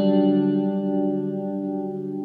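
Acoustic guitar's closing chord ringing out and slowly fading, with no new strum.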